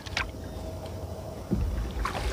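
Wooden canoe paddle stroking through calm water, with low wind rumble on the microphone. A heavier stroke comes about a second and a half in.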